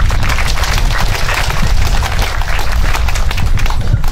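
Audience applauding: many hands clapping densely and irregularly.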